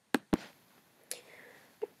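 Two sharp computer-mouse clicks about a fifth of a second apart, advancing the presentation to the next slide, followed by a faint breath.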